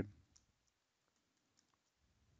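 Near silence with a few faint, scattered keyboard clicks as code is typed.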